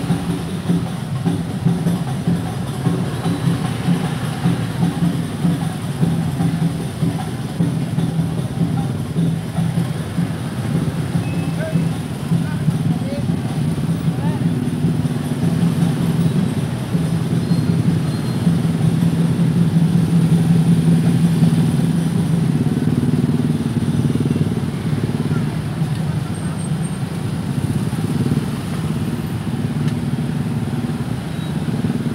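Many small motor scooters riding slowly in a dense crowd, a steady low engine hum from many bikes at once, with indistinct crowd voices mixed in; it grows a little louder about two-thirds of the way through.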